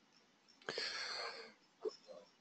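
One audible breath of just under a second, drawn by the person at the microphone, followed by a short faint sound just before the end.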